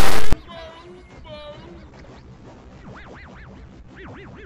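A loud, harsh mash of many layered soundtracks cuts off suddenly about a third of a second in. What follows is faint: two short pitched chirps, then a run of quick up-and-down swooping tones near the end.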